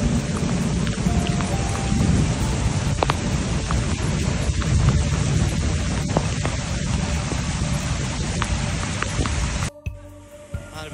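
Heavy rain and rushing floodwater: a dense, steady noise with a deep rumble and scattered sharp patters, cutting off suddenly just before the end.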